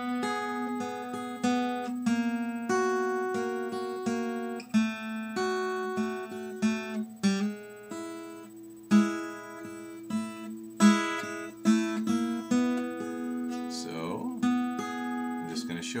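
Acoustic flat-top guitar playing a blues turnaround in E: a sequence of plucked notes and double stops that keep changing pitch over a note left ringing underneath.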